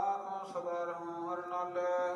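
Sikh devotional chanting of gurbani in long held notes.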